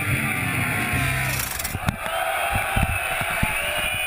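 The band's final chord rings out for about a second as the song ends, followed by loud, steady live-room noise from the club crowd with a few low thumps.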